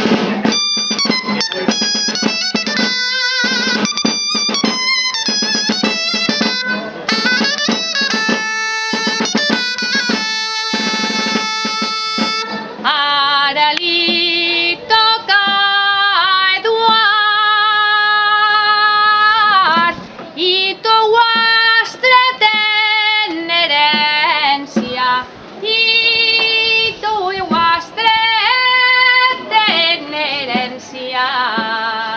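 A dolçaina and tabalet play a traditional Valencian albà with regular drum strokes. A little before halfway the instruments stop and a woman sings an albà verse solo in long, ornamented phrases with wavering held notes.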